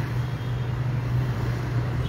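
A steady low engine hum with a background wash of noise, like vehicle traffic running.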